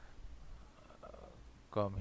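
Faint low hum of room and microphone noise, then a man's voice starting near the end.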